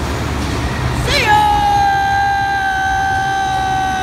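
A boy's voice makes a siren-like whoop up and down about a second in, then holds one long high note, sung with his mouth against the grille of a large fan.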